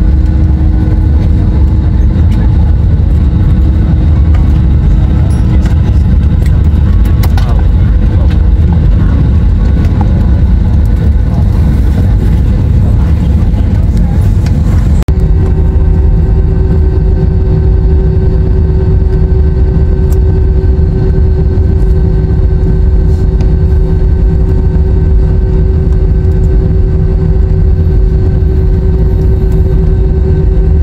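Jet airliner heard from a window seat inside the cabin while it taxis: a loud, steady low rumble of engines and cabin air with a steady hum over it. The hum changes pitch abruptly about halfway through.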